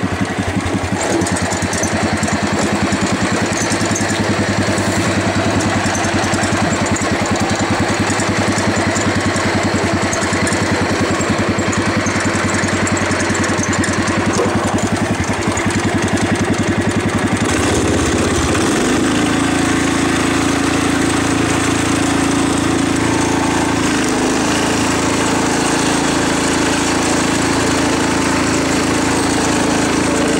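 Wheel Horse C-81 garden tractor's Kohler K181 single-cylinder engine running steadily while the tractor is driven. A little past halfway the engine note rises and then holds at the higher pitch.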